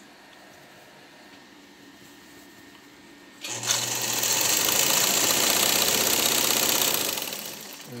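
Vigorelli sewing machine with an all-iron mechanism running at speed and sewing a newly selected stitch pattern. It starts about three and a half seconds in, runs steadily with a fast needle rhythm, then slows and stops after about three and a half seconds.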